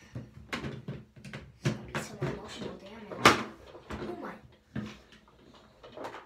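A run of short knocks and taps, about a dozen, the loudest a little past three seconds in, with brief bits of voice between them.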